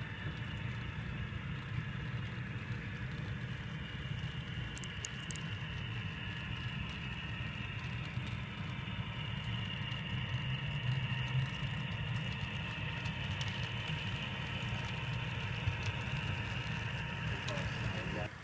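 HO-scale model diesel locomotives running along the layout: a steady, engine-like low rumble with a higher whine above it, cutting off suddenly near the end.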